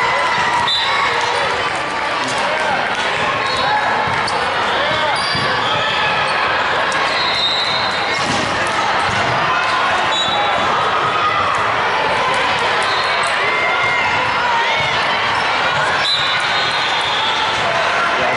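Busy, echoing volleyball hall: volleyballs being hit and bouncing on the hardwood floor, with many overlapping voices of players and spectators.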